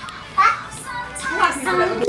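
Children's voices talking excitedly over each other, with music playing underneath.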